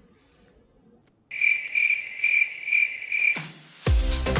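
Crickets chirping as a comic sound effect, the 'crickets' cue for an awkward silence: a steady high trill pulsing about twice a second that starts about a second in and stops shortly before the end. Dance music kicks in at the very end.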